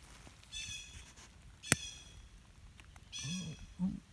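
A bird calling three times in high calls with stacked overtones, and a single sharp click near the middle.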